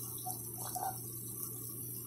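Thick Alfredo sauce bubbling in a frying pan while a wooden spoon stirs it, with a few soft pops from the bubbles.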